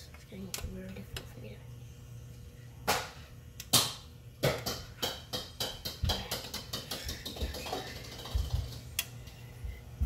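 Scattered sharp knocks and taps, about half a dozen, the loudest about four seconds in, over the steady low hum of a kitchen fan.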